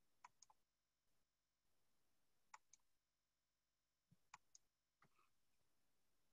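Near silence with faint clicks of a computer mouse, in quick pairs, three times.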